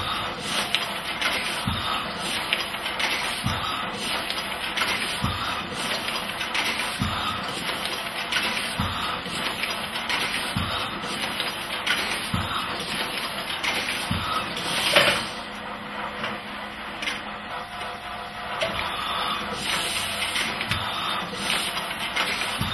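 Printing machine running steadily, a dense mechanical clatter with a regular low thump about every second and three-quarters. There is a louder knock about fifteen seconds in, and the clatter is a little quieter for a few seconds after it.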